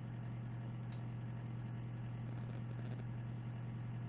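Steady low electrical hum in the background of a home streaming microphone, with a faint click about a second in and a few faint ticks between two and three seconds.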